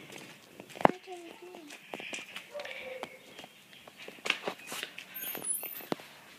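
A child's voice talking too quietly to make out, in short bits, with scattered light clicks and knocks around it, the sharpest about a second in.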